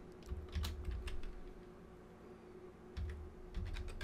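Typing on a computer keyboard: a quick run of keystrokes for about a second, then a pause, then a few more keystrokes near the end.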